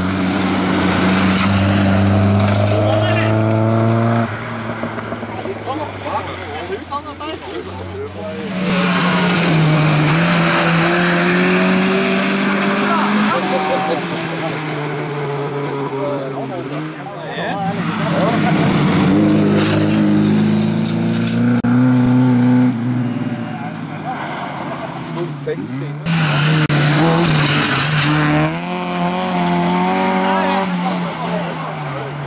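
Rally cars on a gravel stage, Volvo saloons among them, passing one after another with engines revving hard. The pitch climbs and drops through gear changes and lifts, over loose gravel noise under the tyres. About four loud passes come and go.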